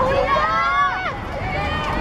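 A child's shout on the pitch: one drawn-out high call of about a second that drops in pitch at its end, with shorter calls from other children around it, over steady outdoor background noise.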